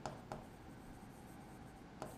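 Writing on a board: two short strokes of the writing tool against the board just after the start, then only faint strokes and room hiss.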